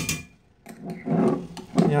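A single sharp click, then faint handling noise with a few small clicks from kitchen items being moved on the counter. A man's voice starts at the very end.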